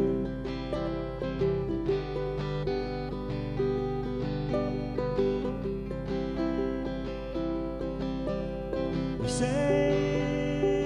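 Instrumental break in a folk ballad: acoustic guitar strumming a steady rhythm under held accompanying notes. About nine seconds in, a higher tone slides upward into the tune.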